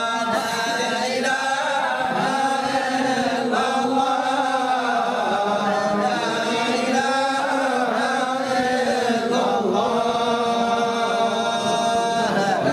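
A group of men's voices chanting together in a continuous Sufi devotional chant, with long held notes that rise and fall slowly and no pause.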